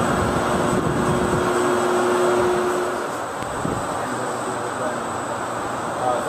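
Steady rushing air noise of data-center cooling fans and air handling, with a steady hum over it for the first half. It drops a little in level about halfway, and there is one short knock after that.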